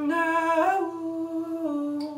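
A man's voice holding one long wordless sung note, stepping up slightly in pitch about half a second in, in a small tiled bathroom.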